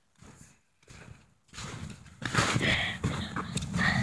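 Footsteps crunching through snow, irregular strokes that begin about a second and a half in and grow louder.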